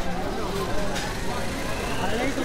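Indistinct voices of several people talking close by, over a steady background hum.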